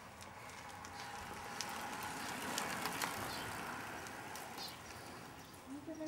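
Two road bicycles passing close by: tyre and drivetrain noise swells for about three seconds and then fades, with a few light clicks near the loudest point.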